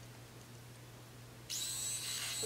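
Small battery-powered motor of a Finishing Touch Flawless facial hair remover starting to whir about one and a half seconds in, then running with a steady high-pitched whine.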